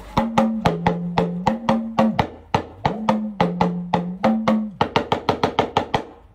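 Talking drum played in a rhythmic phrase: sharp strokes whose ringing pitch steps between a higher and a lower note as the drum's tension is squeezed and released. The phrase ends with a quick run of about eight strokes a second on the lower note.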